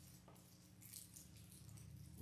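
Near silence: a low steady room hum with a few faint light rattles and clicks, mostly about a second in, from small communion cups and bread being handled.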